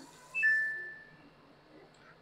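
A short electronic beep from the Samsung washing machine's control panel, a single high note fading away over about a second, as the machine is paused. Just after it, the faint hiss of water spraying from the open inlet valve stops as the valve shuts.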